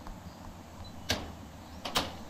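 Two sharp knocks, one about a second in and one near the end, over a steady low hum.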